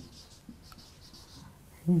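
Marker pen scratching on a whiteboard in several short, faint strokes as letters are written.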